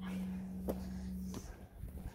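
Footsteps on a tarmac pavement, two light steps about two-thirds of a second apart, over a steady low hum and the rumble of a phone's microphone being carried while walking.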